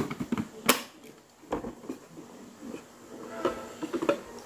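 Plastic toy oven handled by a small child: a few sharp clicks and knocks in the first second and a half, then quieter fumbling with the oven's door and knobs.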